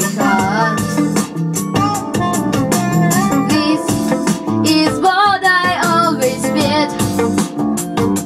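Pop backing track with a steady beat and guitar, with a child's voice singing over it at times in drawn-out, wavering notes.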